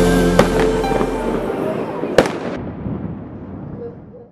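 Fireworks bursting overhead: sharp bangs about half a second in and a louder one a little after two seconds, each with a trailing rumble. They sound over the last held notes of a song, and the whole mix fades away.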